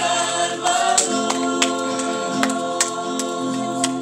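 Mixed church choir singing long held notes in the closing phrase of a Christmas hymn, with the chord shifting about a second in. Strummed acoustic guitar accompanies the voices.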